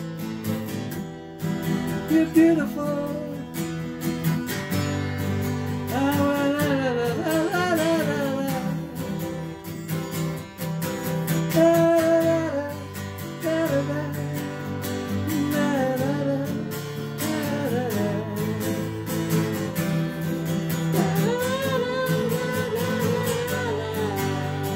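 Acoustic guitar strummed steadily, with a voice singing a melody over it.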